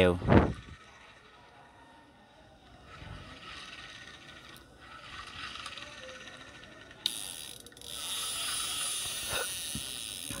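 A Daiwa spinning reel being cranked by hand: a steady whirring hiss of the turning rotor and gears, which gets suddenly louder about seven seconds in and eases off near the end.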